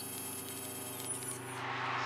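Steady low electrical hum made of several evenly spaced low tones, with a faint hiss above it.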